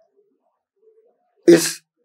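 Near silence, then about one and a half seconds in a man says a single short word as his talk resumes.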